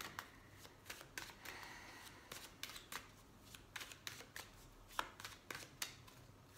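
A deck of tarot cards being shuffled by hand: faint, irregular card flicks and clicks, with a sharper snap about five seconds in.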